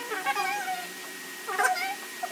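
A cat meowing twice: a drawn-out, wavering meow at the start and a short one about a second and a half in.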